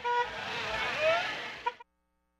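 A brief car horn toot, then outdoor road noise with faint wavering voices, which cuts off suddenly near the end.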